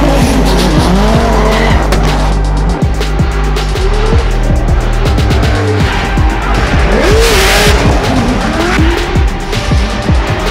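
Drift cars' engines revving up and down with tires squealing as they slide sideways, over music with a steady bass line.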